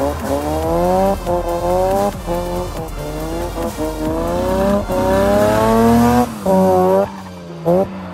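Drift car's engine revving hard again and again, its pitch climbing for about a second, then falling as the throttle is worked mid-slide, with tyres squealing against the asphalt.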